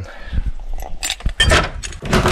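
A bunch of keys jingling and clinking, with a few sharp clicks and knocks about a second in as a door is unlocked and pulled open.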